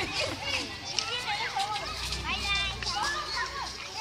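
Several children talking and calling out over one another while playing.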